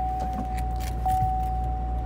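2015 Corvette Stingray's electronic warning chime sounding with the driver's door open: one steady mid-pitched tone, freshly struck a little more than once a second, over a low steady hum.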